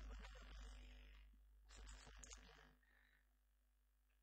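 Near silence on an old cassette recording: a steady low hum, with faint indistinct sounds in the first second and a short burst about two seconds in, then only the hum.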